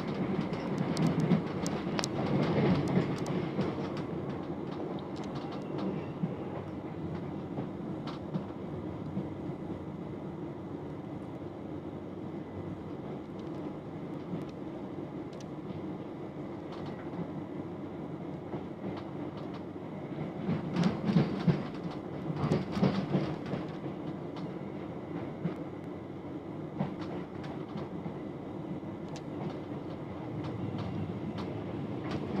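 Interior sound of a c2c Class 357 Electrostar electric train running slowly: a steady low rumble of wheels on rail, with bursts of clicking and knocking from the wheels over rail joints or points in the first few seconds and again about twenty seconds in.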